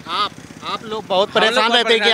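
A man talking, with a low traffic hum behind.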